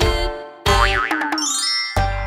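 Children's song backing music with a cartoon boing sound effect. About two-thirds of a second in comes a wobbling boing, followed by a rising whistle-like glide near the end.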